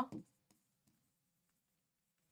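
A woman's voice trails off at the very start, then near silence: room tone.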